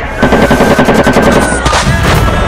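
Rapid automatic gunfire: one long burst of many shots in quick succession, lasting about a second and a half, over background music.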